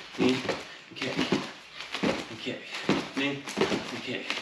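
A man's voice calling short drill cues such as "knee", one short call after another, as the rhythm for a knee-and-kick warm-up exercise.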